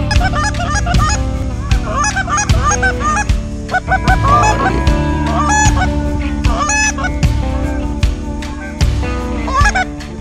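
Goose honks and clucks, many short calls in quick clusters that thin out after about seven seconds, over music with a steady drum beat.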